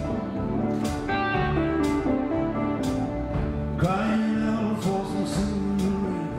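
Live blues-country band playing an instrumental passage: electric lead guitar with bent notes over bass and drums, with a drum hit about once a second.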